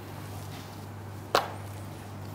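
A single sharp tap of a marker against a whiteboard about a second and a half in, over a steady low hum.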